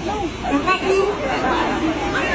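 Speech only: Khmer spoken through a microphone and PA, with crowd chatter behind it.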